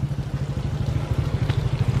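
Small motorcycle engine running at low revs, a fast, even low throb.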